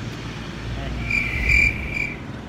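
A high-pitched, steady trilling tone starts about a second in and lasts about a second, over a low background rumble.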